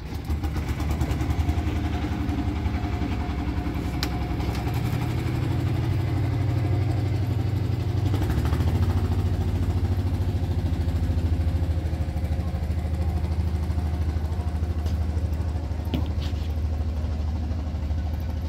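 A diesel engine runs steadily through the whole stretch, a low drone whose pitch shifts a little about five seconds in and again near eight seconds. A couple of faint clicks sit on top of it.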